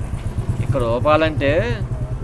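A man speaking briefly in the middle, over a steady low rumble.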